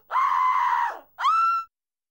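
A cartoon rat character screaming in fright: one held high scream lasting about a second, then a shorter scream rising in pitch that cuts off suddenly.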